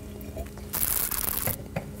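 A sip of white wine from a wine glass drawn in with a hissing slurp, lasting just under a second, followed by a small click.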